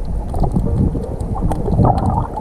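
Muffled water churning and bubbling picked up by a camera held underwater: a continuous low rumble with faint scattered clicks.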